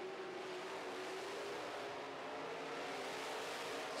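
Dirt-track modified race cars' engines running, a steady drone under a wash of noise.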